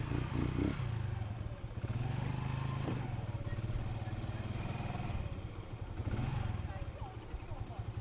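Motorcycle engine running steadily at low revs as the bike rolls slowly along at walking pace.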